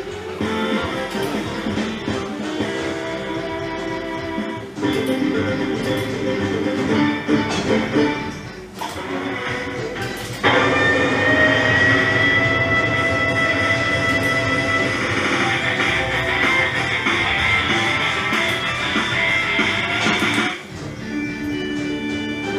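German slot machine playing its game music and jingles. About ten seconds in it jumps to a louder, brighter jingle with a long held high tone while the gamble ladder is shown, and this cuts off about twenty seconds in.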